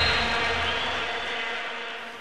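The tail of a TV sports-segment intro jingle: a rushing, whoosh-like music sting that fades out steadily.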